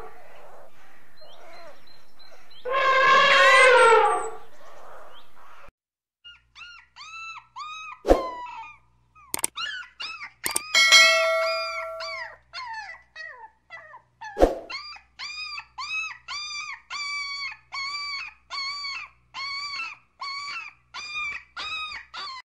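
An elephant trumpets once, a few seconds in. Then a Siberian husky whines and howls in a long run of short rising-and-falling cries, settling into about two a second.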